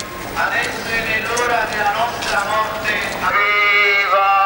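Voices of a group singing a hymn together, their pitches wavering. About three seconds in, a louder, steadier sung melody with vibrato takes over.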